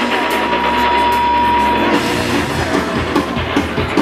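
Loud heavy rock music with electric guitar and drums. A long high note is held for about the first two seconds, then drum beats come in.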